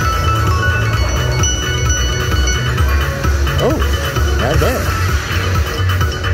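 Casino video slot machine playing its electronic music and ringing chime tones over a strong, pulsing low bass, as the reels spin during a bonus feature.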